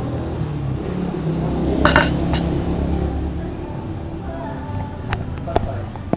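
Tableware clinking briefly about two seconds in, a sharp ringing knock followed by a smaller one, over steady background music.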